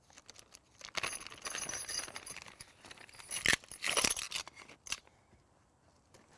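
A small plastic bag of nuts, bolts and washers being opened with a crinkling rustle, then the metal hardware tipped into a steel magnetic parts bowl, clattering in two short bursts about three and a half and four seconds in.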